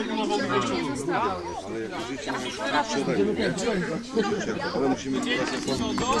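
Several people talking over one another at once: group chatter with no single voice standing out.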